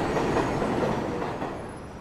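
Chicago 'L' elevated train running along its elevated steel track, a steady noise of wheels on rails that fades away near the end.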